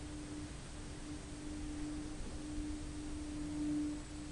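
Thyssen elevator running: a steady low hum over a faint rumble, swelling near the end and then dropping back suddenly.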